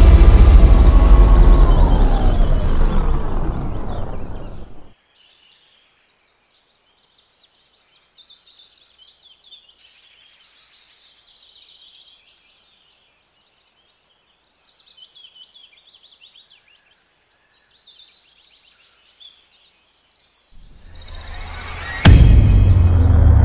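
A heavy cinematic boom with music fades away over the first five seconds and cuts off. Then, in a quiet stretch, birds chirp and call faintly and on and off. Music swells back in near the end.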